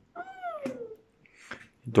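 A single high, meow-like vocal call that falls steadily in pitch over most of a second, followed by a faint short sound.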